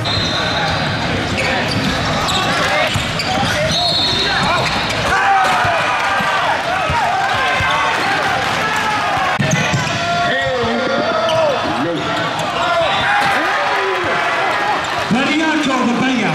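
Live gym game sound: many overlapping voices of players and spectators calling out and chatting, with a basketball bouncing on the court. A few short high-pitched sounds come near the start and about four seconds in.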